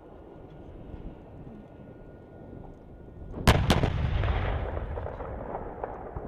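M1 Abrams tank main guns firing: over a low rumble, two sharp blasts about a quarter second apart come about three and a half seconds in, followed by a long rolling rumble that fades over the next two seconds.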